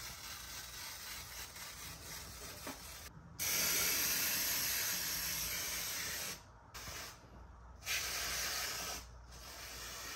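Aerosol root touch-up spray hissing out of the can in one long burst of about three seconds, then a second shorter burst of about a second.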